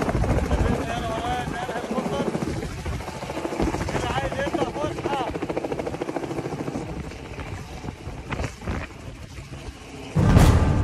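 Light two-bladed helicopter lifting off and flying overhead, its rotor beating in a rapid steady rhythm that grows fainter toward the end as it moves away.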